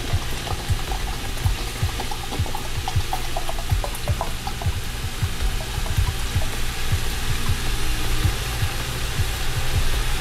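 Water poured from a plastic bottle into a plastic measuring cup, a steady splashing stream as the cup fills.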